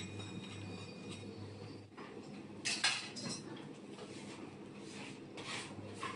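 Metal cake-decorating tools clinking against a metal turntable: a sharp clink about three seconds in and a few softer ones after, over a steady low hum.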